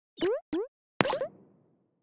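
Cartoon sound effects of an animated logo sting: two quick rising bloops, then a sharper sound about a second in that fades out within half a second.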